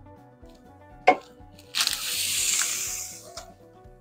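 Background music, with a short sharp knock about a second in, then a hissing rush of noise lasting about a second and a half.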